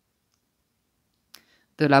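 Dead silence, broken by a single short click about one and a half seconds in, followed by a woman starting to speak just before the end.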